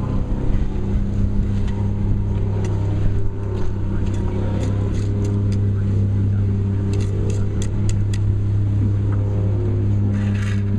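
An engine running steadily at a constant pitch. About seven to eight seconds in, a quick run of sharp taps, typical of a rubber mallet setting a concrete retaining-wall block.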